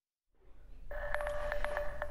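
Dead silence for a moment, then a faint hum fades in, and about a second in a steady electronic tone starts, with a few short clicks over it: a TV news transition sound under a 'Happening Today' graphic.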